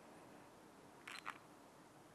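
A handheld stopwatch being started: a short, sharp double click of its button about a second in, against near silence.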